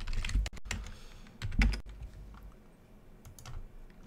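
Typing on a computer keyboard: a quick run of keystrokes at first, then scattered key clicks, with a low thump about one and a half seconds in.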